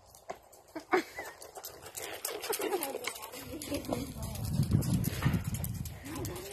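A pony's hooves on a gravel arena as it moves under a rider, with a couple of sharp knocks about a second in and a louder low rumble around five seconds in.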